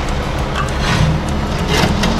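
A steady low mechanical hum, with a few faint light clicks as a small spirit level is handled against an aluminum fence post.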